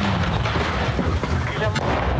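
Sustained gunfire as soldiers return fire in front-line combat: a dense, continuous volley with a heavy low rumble.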